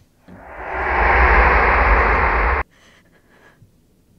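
A loud rushing, noisy horror sound effect with a deep rumble underneath, swelling up over about a second, holding, then cutting off suddenly.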